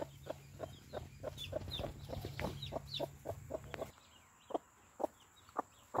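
Mother hen clucking in a quick run of short, low clucks, several a second, while her day-old chicks peep in small high chirps. After about four seconds the run stops and only a few single clucks follow.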